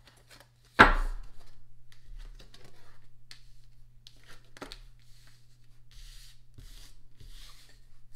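A tarot deck being handled and shuffled by hand: one sharp knock about a second in, then light clicks and soft rustling slides of the cards. A steady low hum runs underneath.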